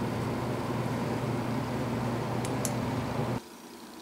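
Bridgeport vertical milling machine running steadily, its motor and spindle humming with the end mill turning, with two faint ticks a little after two seconds in. The sound cuts off abruptly about three and a half seconds in, leaving quiet room tone.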